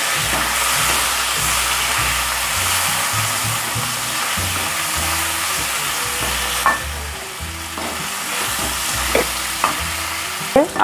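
Potato wedges sizzling in hot oil in a nonstick kadai as they are sautéed with salt and turmeric. A silicone spatula turns them, with occasional scrapes against the pan.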